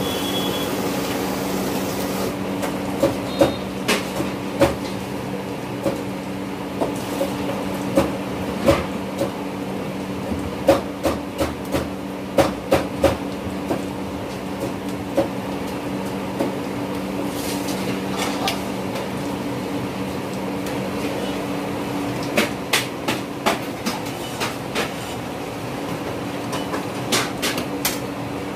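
Steady low hum of gas wok burners and kitchen ventilation, with irregular runs of sharp metal clinks and knocks as a ladle and utensils strike the pans and a bowl.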